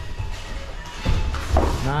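Bodies and bare feet thudding and scuffling on a foam gym mat during a wrestling takedown, loudest about a second in.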